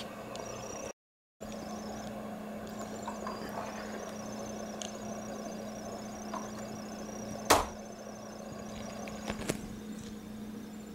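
A Lego model's small electric motor runs with a steady hum after a brief dropout about a second in. A single sharp knock sounds about two and a half seconds before the end, followed by a couple of lighter clicks.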